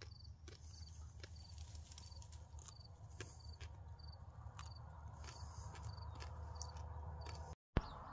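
Faint outdoor ambience: an insect, likely a cricket, chirping about once every half second over a low steady rumble, with a few soft clicks.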